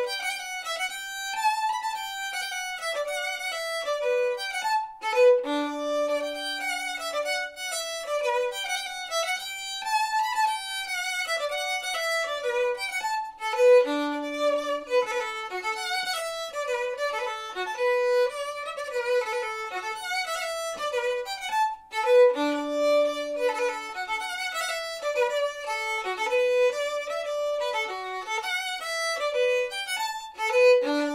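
Solo fiddle playing a brisk Scottish fiddle tune in D major at quarter note = 114, a steady stream of quick bowed notes. A low held note comes back at the end of each phrase, about every eight seconds.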